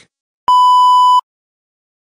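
A single steady electronic beep, the pure-tone bleep sound effect, lasting under a second and starting and stopping abruptly.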